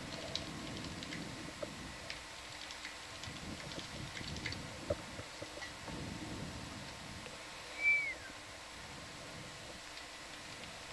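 Quiet room ambience: a low, uneven murmur with scattered small clicks. About eight seconds in comes a brief high squeak that falls in pitch.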